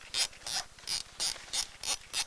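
Disposable film camera's thumbwheel being wound to advance the film, making a rapid, even ratcheting click about three times a second.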